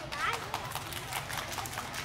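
Sparse, irregular clapping from a few hands, about five to seven claps a second, with faint voices underneath.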